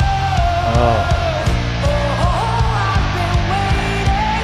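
Live rock band recording: a female lead vocal holds long, bending sung notes over distorted electric guitar, bass and pounding drums.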